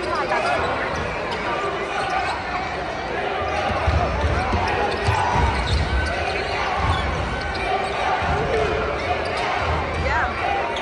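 Basketball dribbled on a hardwood court during live play in a large echoing arena, a run of dribble thumps in the middle, over steady chatter from players and spectators. Short rising squeaks, typical of sneakers on the floor, come near the start and near the end.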